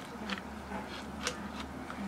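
A few faint, soft clicks and sticky handling noises from hands rolling a wet rice-paper spring roll on a plate, over a low steady hum.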